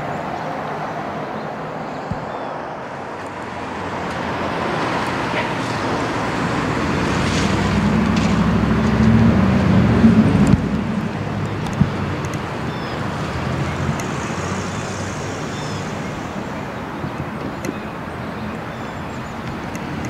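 Road traffic: a vehicle approaches and passes, its noise building to a peak about ten seconds in and then fading into steady background traffic.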